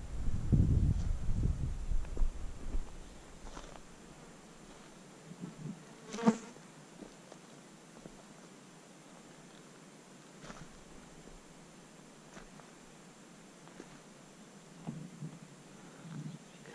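An insect buzzing close by for the first few seconds. Then it is quiet apart from scattered light steps on stony ground, and one sharp click about six seconds in, like a trekking pole tip striking rock.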